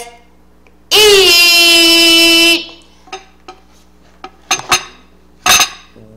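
A woman's voice holding one long note for about a second and a half, with a steady pitch, then a few light clicks and knocks as a plate is handled, and a sharp sound near the end.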